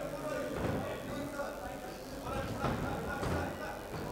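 Shouting voices from the crowd around a fight cage, with a few dull thuds.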